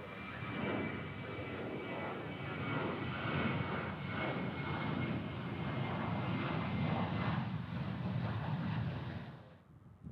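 Boeing 737 jet engines at takeoff power as the airliner climbs out, a steady roar with a thin high whine over it in the first part. The roar fades near the end and then cuts off abruptly.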